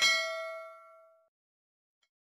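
A single bell-like ding sound effect: a sudden strike that rings with several clear tones and fades away over about a second.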